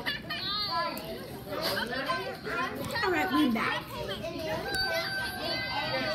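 Several children talking, shouting and laughing over one another, with no clear words.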